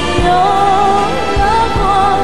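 A Mandarin pop ballad: a voice holding long, wavering notes over a full accompaniment with a low beat.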